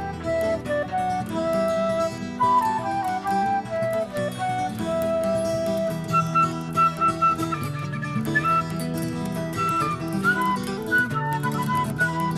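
Instrumental break in a psychedelic folk-rock song: a lead melody of held and moving notes played over the band's guitar and bass backing, with no singing.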